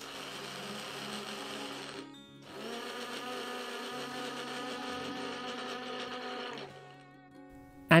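A small bullet-style blender's motor runs in two bursts while it grinds grated coconut and water into a fine paste: about two seconds, a short stop, then about four seconds more before it cuts off.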